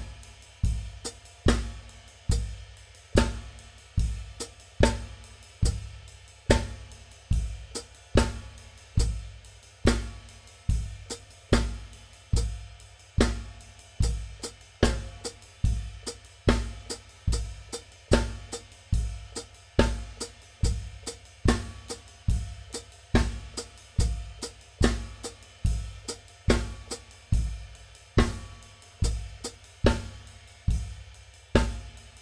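Gretsch Brooklyn drum kit with Zildjian cymbals played in a steady practice groove at a slow tempo. A low bass-drum thump lands on every beat, a little more often than once a second. Over it the left foot plays a written melody line on the hi-hat, between snare and cymbal strokes.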